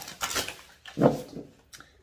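Oracle cards being handled: short rustling and sliding of card stock, with one louder dull knock about a second in.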